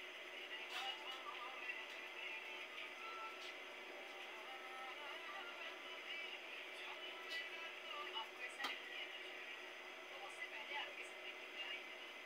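Faint, indistinct voices with some music in the background, over a steady hum.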